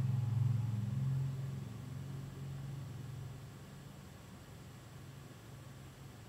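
A low steady rumble, loudest at first and fading gradually away over the next few seconds.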